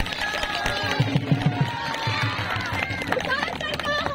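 A woman singing through a PA system in long held notes, with a quick run of low drumbeats about a second in.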